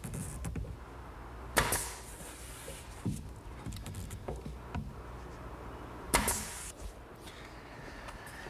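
Wooden knocks and taps as a pine panel is handled and set against the pine case of a blanket chest: two sharp knocks about four and a half seconds apart, with fainter taps between.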